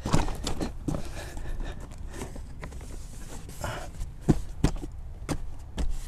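Scattered soft knocks, scuffs and rustling as a molded rubber floor liner is pushed and shuffled into place on a car's floor.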